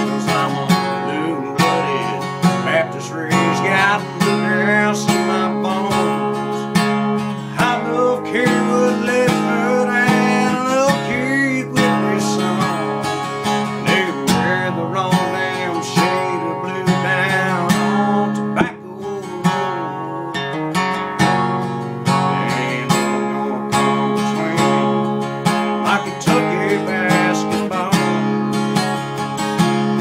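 Acoustic guitar strummed steadily in a country-style accompaniment, with a man's voice singing a wordless melody over parts of it.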